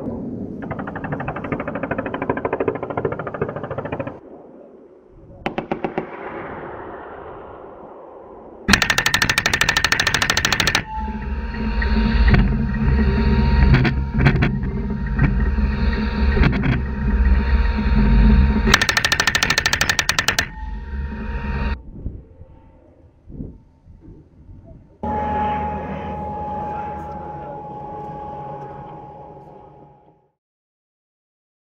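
Bursts of machine-gun fire from an M1128 Stryker Mobile Gun System: a short burst about six seconds in, then longer bursts about nine and nineteen seconds in. Between and after the bursts, the Stryker's engine and drivetrain run with a heavy low rumble and a steady whine as the vehicle drives.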